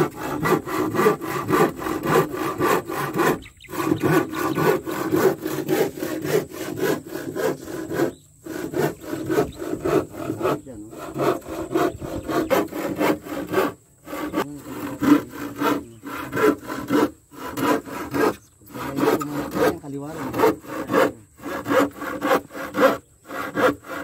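Handsaw cutting through a board with quick back-and-forth rasping strokes. The strokes break off in short pauses every few seconds.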